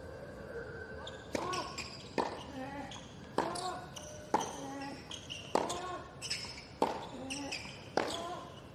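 Tennis rally on a hard court: a ball struck back and forth by rackets, six sharp hits about a second apart starting about a second in, each followed by a short grunt from the player hitting it.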